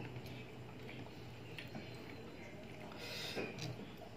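Faint eating sounds of a man chewing spicy chicken feet by hand: small wet mouth clicks and ticks, with a short hiss a little after three seconds, over a low steady hum.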